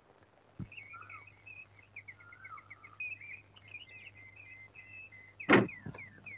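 Faint birds chirping in quick, repeated high notes, with a single dull thump about half a second in and a short louder burst shortly before the end.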